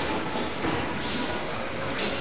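Faint voices in a large hall under a steady hiss, with soft rustling of movement.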